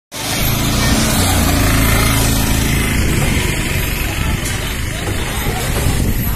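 A motor vehicle's engine running close by, a low steady hum under loud, even noise, with people's voices over it.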